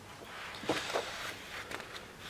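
Paper pages of a coloring book being turned by hand: a soft swishing rustle, strongest about half a second to a second in, with small papery clicks.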